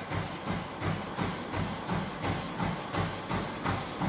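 Footfalls striking a motorised treadmill's running belt at a hard running pace, a steady rhythm of about three strikes a second, over the treadmill's steady running hum.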